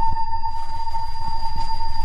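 A steady, eerie electronic tone, one unchanging pitch, held over a low rumble, like a sci-fi drone on a soundtrack.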